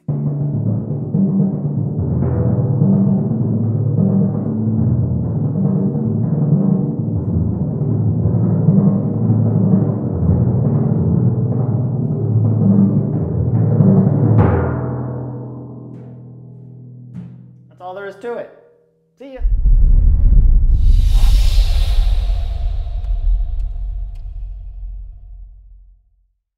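Timpani played with felt mallets in a fast, steady run of single strokes moving from drum to drum across four drums, then left to ring and fade out from about 14 seconds in. Near the end, a loud low rumble with a hiss starts suddenly and slowly dies away.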